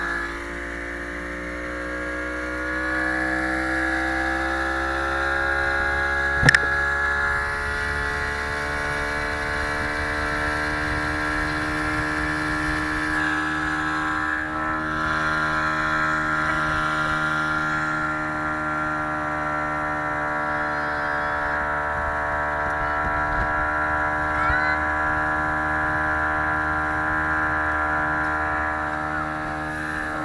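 Motorboat engine running at speed, its pitch rising for a couple of seconds near the start as the boat picks up speed, then holding nearly steady. A single sharp knock about six seconds in.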